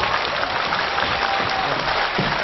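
Theatre audience applauding, steady clapping from a large crowd.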